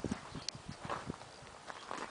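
Footsteps on hard ground, a few irregular scuffs and clicks from someone walking.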